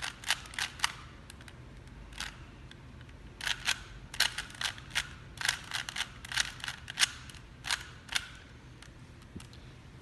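A 3x3 Rubik's cube being turned quickly by hand, its plastic layers clicking in rapid bursts through the last step of the solve. The clicks come in runs, with a pause in the first few seconds, and stop about two seconds before the end.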